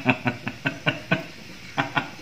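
A man laughing: a quick run of short 'ha' bursts that breaks off just past a second in, then two more near the end.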